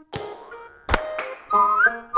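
Title jingle: two sharp percussive hits in the first second, then a whistled melody over music from about halfway through.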